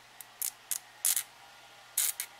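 Needle file drawn in short strokes across the edge of a small photoetched metal part, about five brief, high rasping strokes at uneven spacing, smoothing the nub left where the part was cut from its sprue tab.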